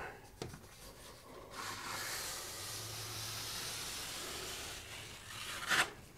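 A plastic paint shield is drawn down a wall through wet drywall joint compound under heavy outward pressure. It makes a steady scraping rub for about three seconds, and a click follows near the end.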